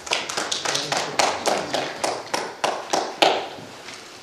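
A few people clapping unevenly, fading out after about three seconds.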